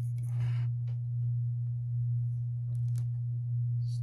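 A steady low hum, with a brief soft hiss at the start and a few faint clicks about three seconds in.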